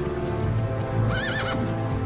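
A horse whinnies once, briefly, with a wavering pitch about a second in, over orchestral film score music.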